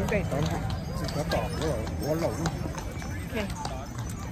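People talking, with a steady low hum beneath the voices and faint, irregular clicks throughout.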